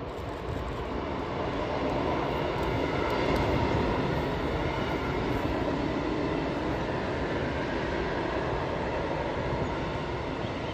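A freight train of hopper wagons rolling past, the steady rumble and clatter of wheels on the rails. It swells over the first few seconds as the locomotive goes by, then holds steady as the wagons pass.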